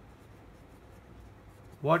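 Felt-tip pen writing on paper, a faint, steady scratching as a word is written out.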